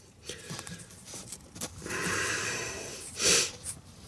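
Nylon cable tie being pulled tight through its ratchet, giving a buzzy zipping sound lasting about a second midway, after a few small clicks of handling, with a short louder burst of noise near the end.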